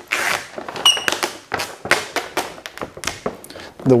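Carbon-fibre vinyl wrap film being worked onto a car hood while its backing liner is pulled away: irregular crackling and tapping of the film and liner, with one brief high squeak about a second in.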